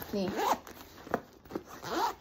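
Zipper of a nylon handbag being pulled open by hand.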